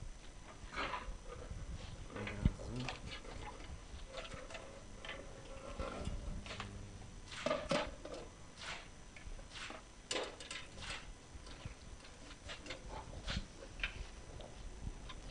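Scattered clicks and knocks from lanterns being handled and passed between people, with brief quiet murmured voices in a room.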